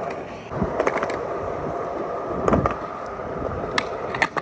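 Skateboard wheels rolling over smooth concrete with a steady rumble and a few light knocks from the board. Near the end comes a single sharp crack: the tail popping off the ground for a switch pop shove-it.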